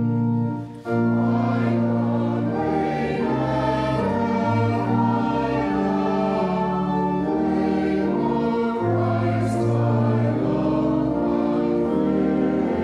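Congregation singing a hymn with organ accompaniment, held notes moving in steps from chord to chord. A short break between lines comes about a second in.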